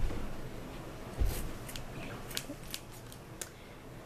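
Scissors snipping through T-shirt fabric as strips are cut on a slant: a run of short, sharp cuts, with a dull thump about a second in.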